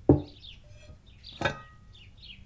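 Two sharp knocks of a plate being set down on a table, about a second and a half apart, the second ringing briefly. Faint high chirps sound in between.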